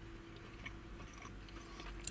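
Faint chewing of a mouthful of burrito beef, with a steady low hum underneath.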